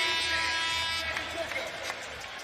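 Arena crowd noise with a steady held tone over it that fades out about a second in, followed by two brief sharp clicks.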